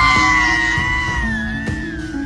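A man's long scream from an anime dub, held on one high pitch and sinking slightly near the end, over background music.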